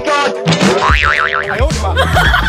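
Edited-in cartoon comedy sound effects over background music, including a springy boing whose pitch wobbles up and down about a second in.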